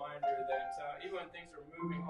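Hymn singing with keyboard accompaniment: a voice moves between notes over held instrument tones.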